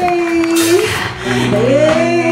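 Live blues band playing: a woman sings a long held note that ends a little under a second in, then slides up into the next held note, over electric guitar, bass guitar and drums.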